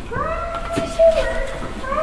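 A long, high-pitched wailing call that rises at the start and is held for about a second, followed by a second, shorter one near the end.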